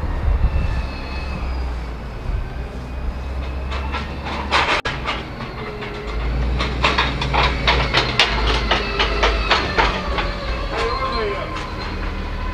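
Footsteps on concrete at a walking pace, an even run of sharp steps about three a second, clearest in the second half, over a steady low rumble of wind on the microphone.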